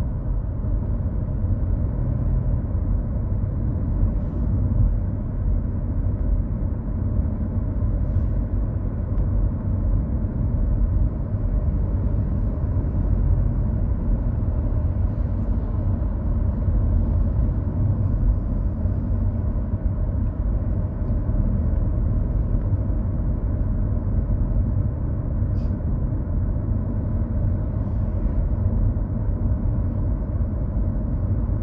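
Car in motion, heard from inside the cabin: a steady low rumble of tyre and engine noise.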